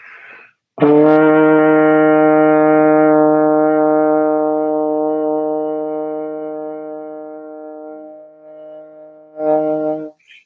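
Tenor trombone playing a long tone on the E-flat below middle C in third position. A short breath comes first, then the note is held steady for about seven seconds, slowly fading, and swells briefly again near the end.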